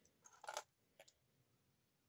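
A few faint clicks of small plastic LEGO pieces being picked up and handled, in the first half second and once more about a second in, with near silence between.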